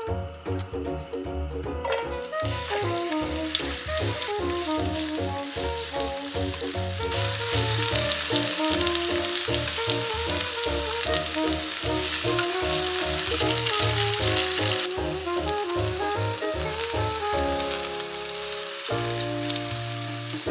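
Eggplant strips frying in sesame oil in a non-stick pan, a steady sizzle that starts about two seconds in and is loudest through the middle. Background music plays throughout.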